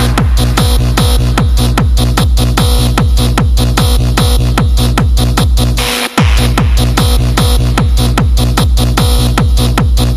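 Hardstyle dance track: a heavy kick drum whose pitch drops on every hit, keeping a fast steady beat over sustained synth chords. The beat cuts out for a split second about six seconds in.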